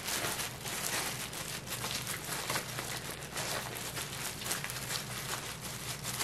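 Parchment paper crinkling and rustling, with a continuous run of small crackles, as gloved hands peel it off a slab of freshly steamed sticky rice cake.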